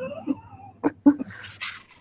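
People laughing: high, squeaky, wavering giggles with a few sharp short bursts, ending in a breathy wheeze.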